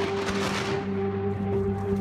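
Thunder from a lightning strike, its crash fading away over about a second and a half, under a steady held background music chord.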